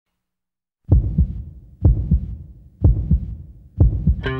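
Recorded heartbeat sound effect opening a rock track: four low double thumps, lub-dub, about one a second, starting about a second in after silence.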